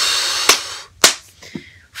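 A man blowing out a long, exasperated breath through pursed lips, lasting about a second, with two sharp clicks about half a second apart.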